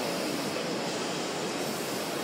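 Packaging machine running, heard as a steady, even mechanical noise mixed with exhibition-hall din.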